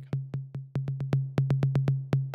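An electronic instrument in Ableton Live plays back a MIDI clip whose notes have been subdivided by the Segment transformer. It is a quick, slightly uneven run of short, clicky hits, about six a second, over a steady low tone.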